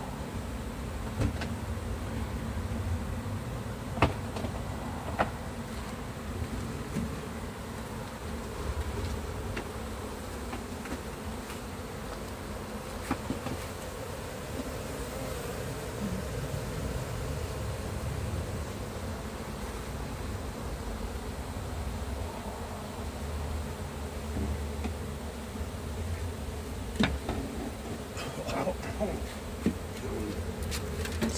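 Many honeybees buzzing steadily around an opened hive, a stirred-up colony. A few sharp knocks break through, the loudest about four seconds in and near the end.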